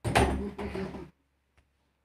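A sudden bump on the phone's microphone, then about a second of rubbing and rustling as the phone is handled. It cuts off about a second in.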